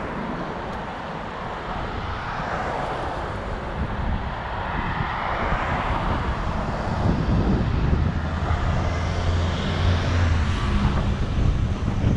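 Street traffic and wind on the microphone of a moving camera, a steady rushing noise; a low engine hum from a vehicle grows louder in the second half.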